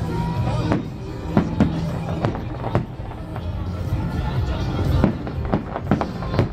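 Aerial fireworks shells bursting in an irregular run of bangs, sometimes two or three within a second, with music playing underneath.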